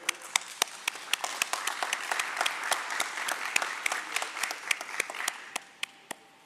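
Applause from a small audience, the individual hand claps clearly separate, dying away near the end.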